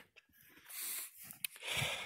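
A man breathing out into the microphone: one long breath, a short click, then a second shorter breath.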